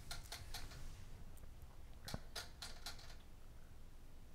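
Faint, irregular clicking of a computer keyboard, a scattering of single clicks spread across the few seconds.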